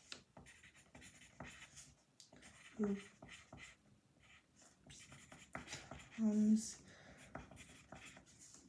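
Pencil writing on paper: a run of short, irregular scratchy strokes.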